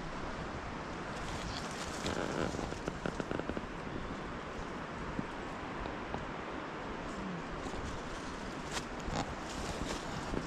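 Footsteps crunching and crackling on dry leaf litter and twigs, with shrub branches brushing past, in scattered bursts about two seconds in and again near the end, over a steady background hiss.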